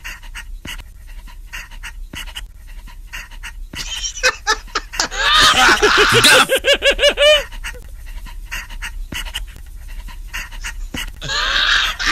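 A man laughing hard in quick, breathy, panting bursts, loudest from about five seconds in to seven and a half, and starting again near the end, with softer breathing between.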